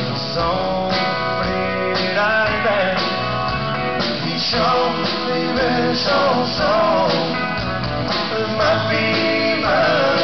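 A live band playing a country-style song, led by guitar, with a melody line that slides and wavers in pitch over a steady bass and rhythm.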